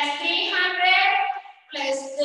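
A high woman's voice in a drawn-out, sing-song delivery, with long held tones and a short break near the end.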